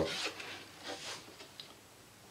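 Double-sided adhesive tape being unrolled and laid along the cardboard seam of a record album cover: a few faint rubbing, scratchy rasps of tape and paper in the first second and a half, then quieter.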